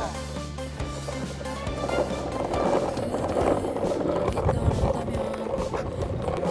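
Background music over the rolling of longboard wheels on tiled pavement.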